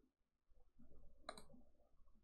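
A single faint computer mouse click a little past the middle, against near silence.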